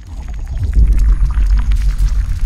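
A deep, loud cinematic rumble from a logo-reveal sound effect, swelling over the first second and then holding, with faint sparkly crackles above it.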